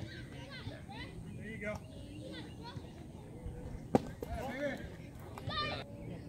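Scattered voices of players and spectators calling out across a ballfield, with one sharp knock about four seconds in.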